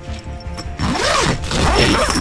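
Tent zipper being pulled along its track: a continuous rasp that starts about half a second in.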